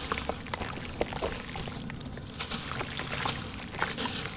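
A lump of sand-cement being crumbled by hand into water: a steady gritty hiss with many irregular sharp crackles as grains and small pieces break off and fall.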